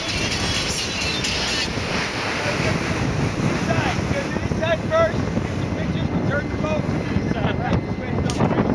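Wind buffeting the microphone over the steady rush of a high-speed tour boat running across open water. A few raised voices break through the noise around the middle.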